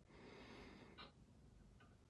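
Near silence: room tone, with a faint click about a second in.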